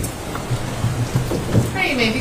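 Courtroom room noise: a low steady hum with scattered rustles and soft knocks from people standing and moving, and a brief murmured voice near the end.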